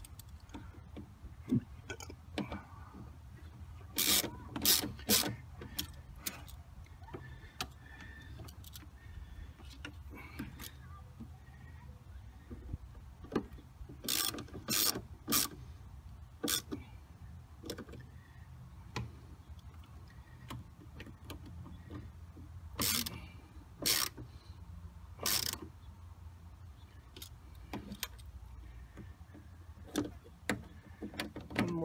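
Hand ratchet wrench clicking as a bolt by the wiper motor is turned, in three short runs of sharp clicks about 4, 14 and 23 seconds in, with scattered single ticks between. A low steady hum sits underneath.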